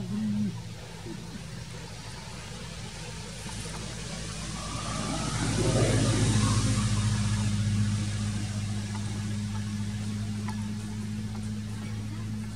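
Engine hum of a passing motor vehicle that swells to a peak about six seconds in and then eases off, over a steady low drone that carries on.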